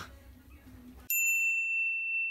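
A single high-pitched ringing tone, an edited-in sound effect, cuts in suddenly about a second in and holds steady, after a second of faint room sound.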